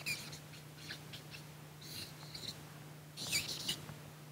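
A felt-tip marker squeaking on flip-chart paper in three short bursts of strokes as words are written.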